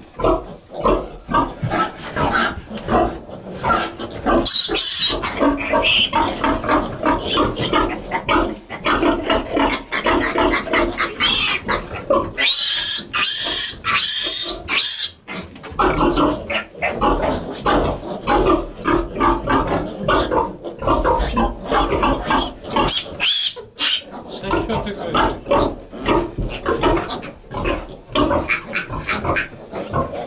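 Pietrain-cross piglets squealing and grunting in rapid, repeated cries while being held up by the hind legs for iron injections. Longer, shriller screams come about four to five seconds in and again from about twelve to fifteen seconds in.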